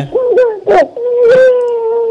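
A young girl crying: a few short wails, then a long, high, held wail that drops in pitch as it ends.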